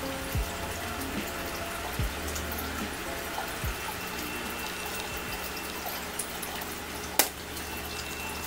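Steady hiss of background noise, with a few soft low bumps and one sharp click about seven seconds in.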